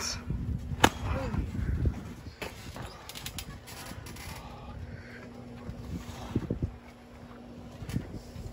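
A single sharp smack about a second in, over a quiet outdoor background with low wind rumble on the microphone and a faint steady hum.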